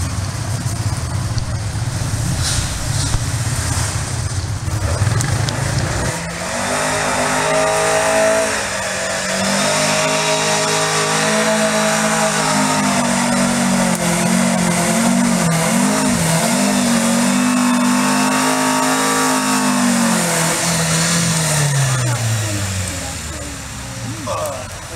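A car engine pulling hard up a steep trial section, its note held high under load and hunting up and down several times about two thirds of the way through, then falling away near the end. A low rumble fills the first several seconds before the engine note comes in.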